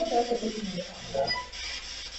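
A single brief, faint piano-like note amid voices, heard through a room recording. The investigators take it for a piano key struck by a spirit, captured as an EVP on an SB7 spirit box.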